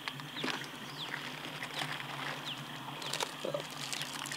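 Rummaging in a backpack: rustling and a few small knocks as items are taken out, with short falling bird chirps repeating faintly in the background.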